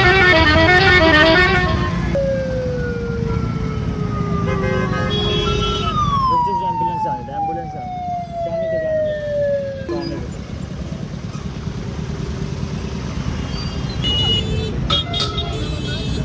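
Road traffic in a jam: engines running steadily around a scooter. Two long falling tones sound between about two and ten seconds in.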